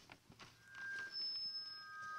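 A few faint clicks, then thin, steady electronic tones at several different pitches. They start about two-thirds of a second in, follow one another and overlap, each held for up to a second or more.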